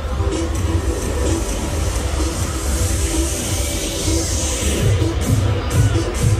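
Loud electronic dance music with a heavy bass from a fairground ride's sound system. A hissing swell builds and fades in the middle.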